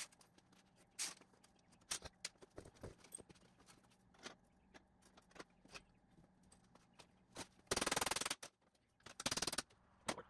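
Hand tools and sheet-metal pieces handled on a steel workbench: scattered light clinks and taps, then two short, loud rattling bursts of metal near the end.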